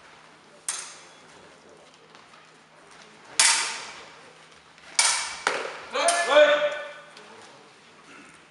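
Steel sabre blades clashing during a fencing exchange: a lighter clash about a second in, then loud ringing clashes at about three and a half and five seconds, followed by further clashes mixed with a raised voice.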